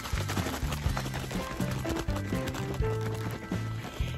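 Aerosol can of Easy Peasy Spray Wax being shaken hard, its contents knocking and rattling inside in a rapid, uneven rhythm: the wax has not yet mixed, and it is ready once the rattle stops. Background music plays over it.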